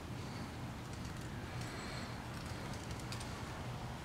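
Quiet background noise: a faint steady low hum with a few soft ticks in the middle.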